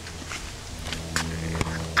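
Handling noise from a camcorder being carried and set down on grass: footsteps and a few sharp knocks against the body of the camera, over a steady low hum.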